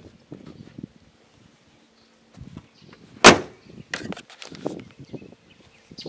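A box Chevrolet Caprice's car door slammed shut once, a sharp bang about three seconds in, with lighter knocks and handling sounds around it.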